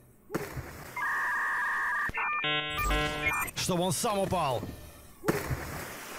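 Electronic sound effects: two steady tones held together for about a second, then a short run of stepped electronic notes, followed by a voice and a hiss of noise near the end.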